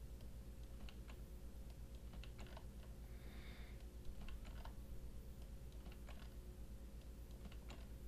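Faint computer-keyboard typing: scattered, irregular keystrokes as short lines of code are edited.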